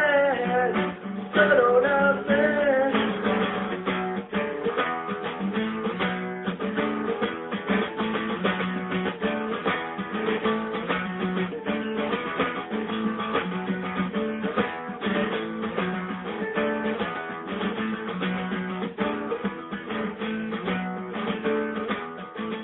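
Instrumental close of a song: acoustic guitar strummed in a steady rhythm. The last sung note trails off in the first couple of seconds.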